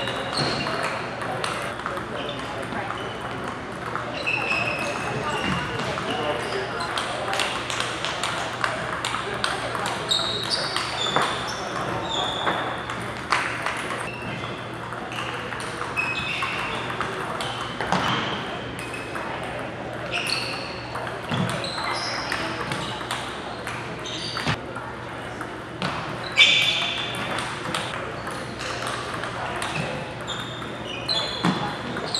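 Table tennis balls clicking off paddles and tables in quick rallies, with several games going at once, among short high sneaker squeaks on the hall floor. Voices murmur in the background.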